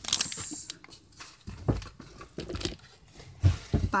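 Small clear plastic candy bag crinkling as it is handled. The crinkle is loudest in the first moment, then gives way to scattered faint rustles and a couple of soft knocks.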